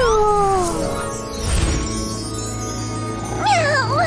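Cartoon cat meowing over background music: a long falling meow at the start and a shorter wavering meow near the end.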